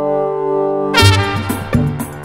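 Instrumental track led by trumpet: a long held note, then about halfway through a new note comes in over bass and drum hits.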